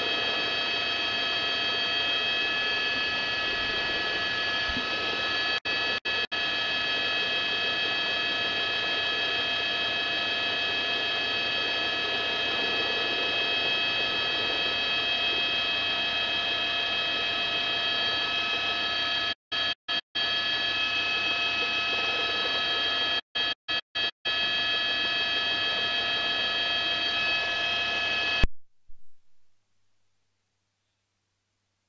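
News helicopter noise over the open live feed: a steady rush with several high, steady whining tones. The feed drops out briefly a few times and cuts off a little before the end.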